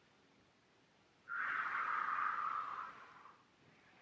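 A single long breath out, a soft hiss of under two seconds starting about a second in, against near silence.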